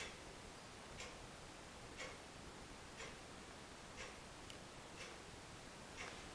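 A clock ticking faintly and evenly, once a second, over quiet room tone.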